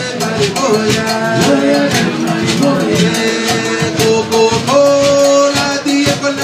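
Live band playing Latin-style music: held and sliding melody notes over a steady, quick percussion rhythm.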